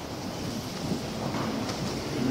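Steady background noise of a church during a pause in the Mass: the room and recorder hiss with a low rumble, with no distinct event standing out.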